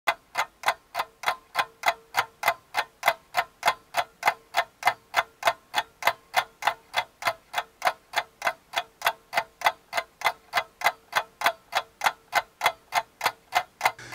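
Clock ticking, evenly, about three ticks a second, with a faint steady tone underneath that stops about ten seconds in.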